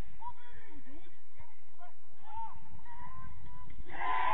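Faint, scattered shouts and calls from footballers across the pitch, short and far off, over a steady low rumble.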